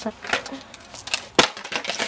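Skateboard deck and wheels knocking on concrete: a few sharp clacks, the loudest a single hard knock about a second and a half in, with voices and laughter around them.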